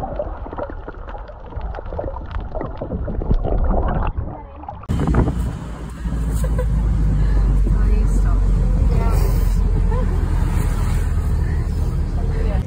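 Underwater sound of snorkellers: muffled bubbling and splashing with many small clicks. About five seconds in it changes suddenly to the inside of a moving vehicle, with a loud steady low rumble of wind buffeting the microphone through an open window.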